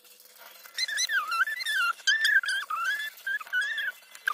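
Alcohol marker tip squeaking against paper in a run of wavering high-pitched squeaks, each about a second long with short breaks, as the marker is stroked back and forth while colouring.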